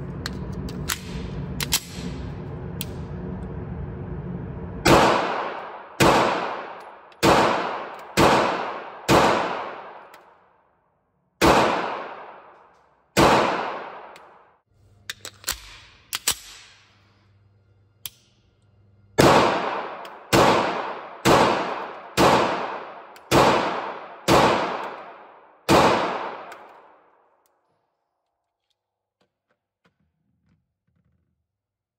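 Sig Sauer P938 subcompact 9mm pistol firing two strings of shots, each shot echoing: seven shots about a second apart, a short pause with a few small clicks, then eight more at the same pace. Before the first shot there is a steady noise with a few light clicks.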